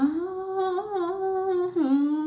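A woman humming one long, held "mmm" on a steady pitch, stepping down slightly near the end.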